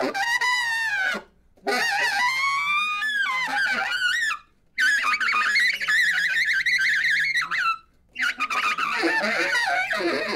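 Free-jazz saxophone playing four long, wavering phrases with short breaths between them. The pitch bends up and down, and the third phrase carries a shrill, fast-wavering high line.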